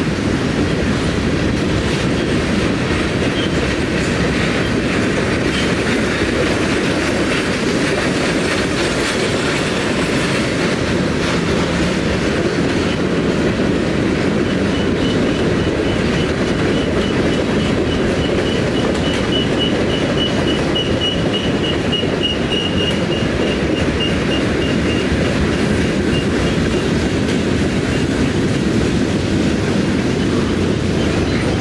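Freight train of tank cars, covered hoppers and boxcars rolling past, a steady loud rumble of wheels on rail. A thin high-pitched wheel squeal comes in about halfway through and fades out near the end.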